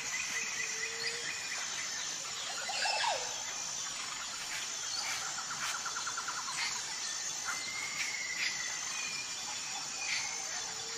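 Nature ambience of several birds chirping and whistling over a steady high insect drone, with a rapid trill about five seconds in.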